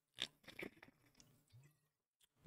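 Near silence with a few faint mouth noises, soft clicks in the first second, as he takes a sip from a water bottle and swallows.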